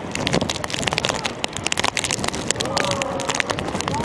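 Live sound from a football pitch: distant shouts and calls of players, one longer call near the end, over steady wind noise on the microphone with frequent crackling clicks.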